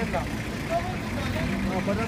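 People's voices talking over a steady low rumble.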